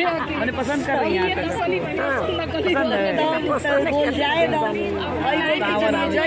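Women chatting close up, with several voices overlapping throughout.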